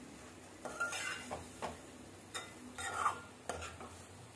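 Metal spoon stirring raw-banana stir-fry in a metal pan, scraping and clinking against the pan in about six separate strokes.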